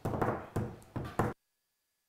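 A few knocks in a small room, then all sound cuts off abruptly to dead silence just over a second in.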